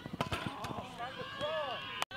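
Soccer players' voices calling and shouting across the pitch, with a quick run of sharp thuds in the first second of play on the grass.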